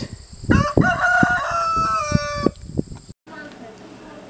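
A rooster crowing once, a single call of about two seconds that dips slightly in pitch at its end, with a few sharp taps alongside. About three seconds in the sound cuts off abruptly to a quiet indoor hum.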